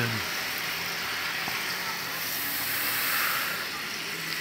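Steady hissing noise, a little louder around the middle.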